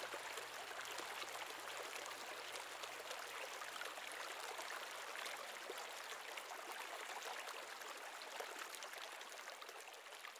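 Flowing stream water, a steady trickling and rushing that begins to fade out near the end.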